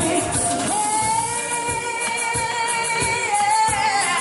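Female singer holding one long sung note into a microphone with light vibrato, starting about a second in and wavering near the end, over amplified cumbia music with a steady beat.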